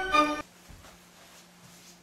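Background music, a melody of held pitched notes, that stops abruptly about half a second in, leaving quiet room tone with a faint steady hum.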